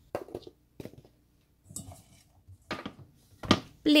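Halved Brussels sprouts being set down one at a time on a metal baking tray: a few scattered light taps, with a sharper knock about three and a half seconds in.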